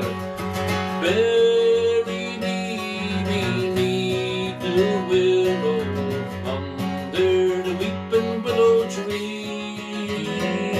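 A man singing a folk song to his own strummed acoustic guitar, the voice coming in phrases with short breaks over the steady strumming.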